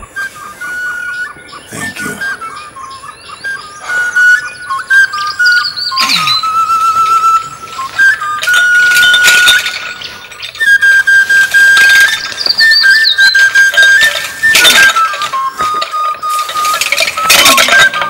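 Background film-score music: a high melody line of held notes stepping up and down in pitch, with sharp percussive hits now and then.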